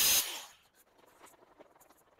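Angle grinder with a cutting disc running briefly, then dying away about half a second in. After that, only a few faint light ticks and rubs.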